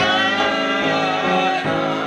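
A man singing a gospel song in long, held notes, with acoustic guitar accompaniment.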